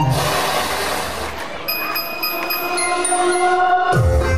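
A sound-effect break in a dance routine's music track played over a hall PA: a burst of rushing noise that fades over about a second and a half, then a few held high tones with no beat or bass.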